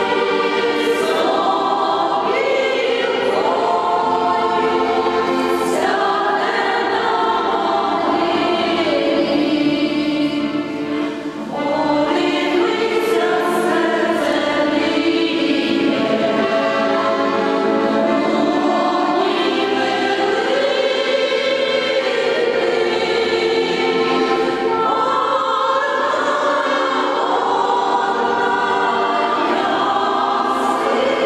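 A women's choir singing slow, sustained phrases together in harmony, with a brief pause for breath about eleven seconds in.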